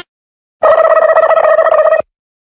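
Loud edited-in sound effect: a steady buzzing tone with a fast flutter, starting about half a second in after silence and cutting off suddenly.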